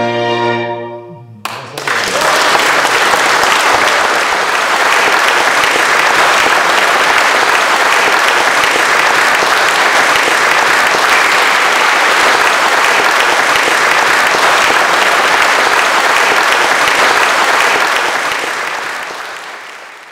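A bowed-string chamber piece ends on its last chord, and a large audience at once breaks into steady applause, which fades out over the last two seconds.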